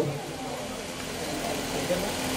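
A steady hum with hiss behind it, holding one even pitch.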